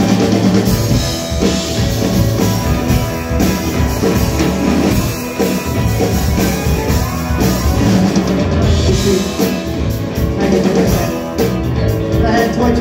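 Live rock band playing an instrumental passage: electric guitars, violin, bass guitar and a drum kit, with a steady beat.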